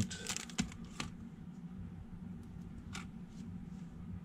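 A few faint, sharp clicks and taps over a low steady hum.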